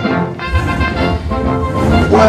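Background music with no speech; a low bass part comes in about half a second in.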